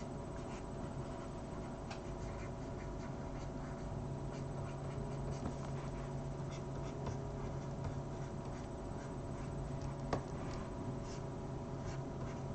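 Faint scratching of a pen stylus stroking across a graphics tablet, over a steady electrical hum, with one sharper click about ten seconds in.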